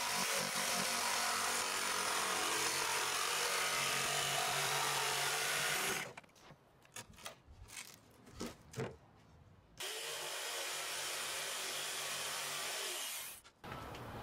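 Corded jigsaw cutting through plywood, running steadily for about six seconds and then stopping. A few scattered knocks follow, then a second, quieter stretch of steady machine noise for about three seconds near the end.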